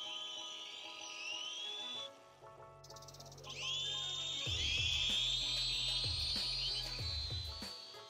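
Background music with a low beat coming in about two and a half seconds in. Over it runs a high, wavering whine that glides upward from a toy quadcopter's four motors being throttled up.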